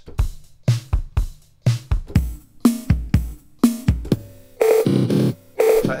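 A sampled drum loop in Logic Pro X's Quick Sampler, made by sampling a MIDI drum pattern through its kit, played from the keyboard at different pitches while Flex and Follow Tempo hold it at the project tempo. Kick and snare hits run through the first few seconds, and the last second and a half is brighter and denser.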